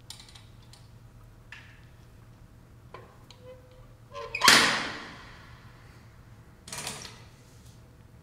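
Mostly quiet, with a sudden loud thud or slam about four and a half seconds in that fades over about a second, and a shorter, softer one about two seconds later.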